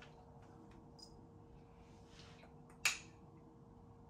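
One short, sharp spritz from a perfume atomizer spray bottle near the end, over low room noise; a fainter breathy hiss comes about a second before it.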